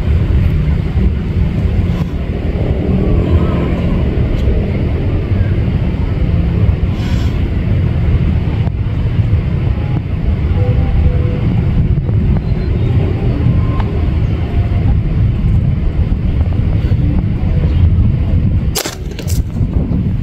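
Wind buffeting the microphone in a steady low rumble, then near the end a single sharp air-rifle shot, followed at once by a couple of quick knocks as the plastic water bottle is hit and falls.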